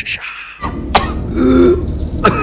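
A man coughing and grunting, a few short harsh sounds with a brief voiced groan about a second and a half in, over a low rumble.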